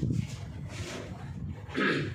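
Whiteboard being wiped with a duster, an irregular rubbing noise, with a brief louder sound near the end.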